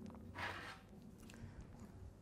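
Quiet room tone with one faint, brief rustle about half a second in.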